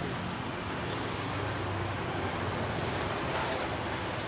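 Steady street traffic noise: a continuous low hum of passing motorbikes and cars under an even hiss.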